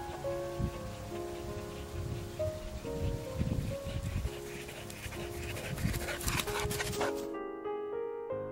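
A Gordon setter running up close, its footfalls and breathing getting louder and nearer, with gentle music playing throughout; the dog's sounds stop abruptly about a second before the end, leaving only the music.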